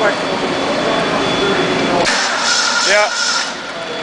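Rebuilt Ford 302 V8 running on an engine stand and cutting out abruptly about two seconds in, followed by a brief hiss. The engine runs with a rod bearing missing on cylinder #1 and a compression ring missing on #3.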